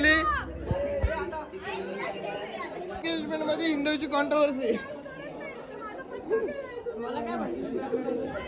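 Several people talking over one another in a lively group chatter, with a voice calling out "nach" ("dance") about four seconds in.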